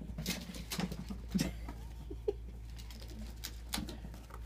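Ferrets scrabbling and pattering through a flexible plastic tube and over carpet: a string of short, irregular scratchy scuffles, with a couple of brief soft pitched sounds among them.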